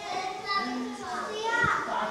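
Several toddlers chattering and calling out at once, high young voices overlapping without a break.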